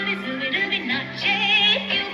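A recorded Indian song with a Hindi vocal playing over a loudspeaker for dancing. The singer's voice wavers through an ornamented, trilled line over the instrumental backing.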